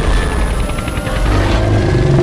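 Film soundtrack from a creature VFX clip: a loud, heavy low rumble of action sound effects with music underneath.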